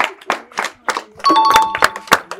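Scattered hand claps from a small group of people. About a second and a quarter in, a two-note ding-dong chime sounds and is held for about half a second.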